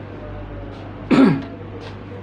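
A man clearing his throat once, a short loud rasp about a second in that falls in pitch, over a steady low hum.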